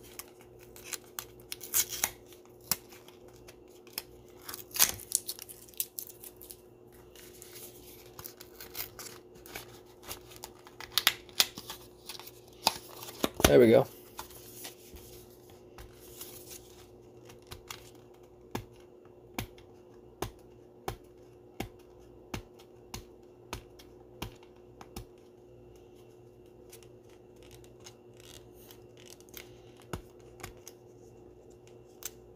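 Hands opening and handling trading cards and their packaging. Tearing and rustling with sharp clicks come in the first half, with a brief loud vocal sound about halfway through. Then comes a run of even clicks, about one every 0.7 seconds, as the cards are flicked through one by one.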